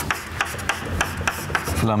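Chalk writing on a blackboard: a run of short scratches and taps as a line of an equation is written, with the voice resuming near the end.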